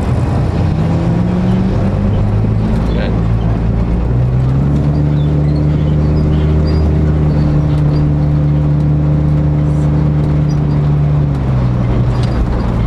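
Car engine running, its pitch stepping up about four seconds in, holding steady, then dropping back just before the end.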